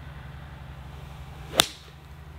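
A Srixon ZX5 6-iron striking a golf ball on a soft cut shot: one short, sharp strike at impact about a second and a half in.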